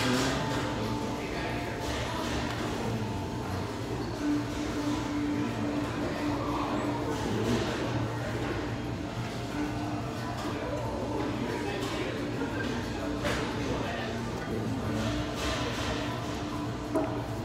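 Restaurant ambience: background music playing, with indistinct voices murmuring in the room.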